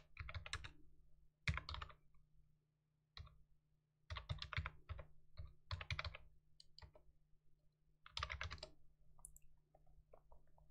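Computer keyboard typing in short bursts of keystrokes separated by pauses of a second or so, over a faint steady low hum.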